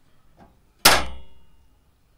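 Recorded sample of a letterbox flap snapping shut. One sharp metallic clack comes about a second in and rings briefly as it dies away, with a faint knock just before it.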